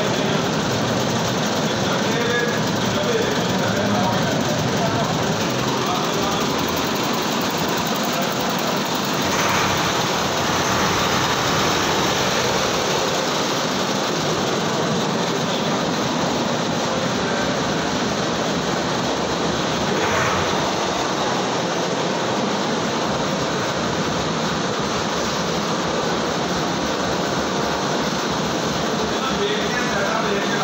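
An engine running steadily, with indistinct voices behind it.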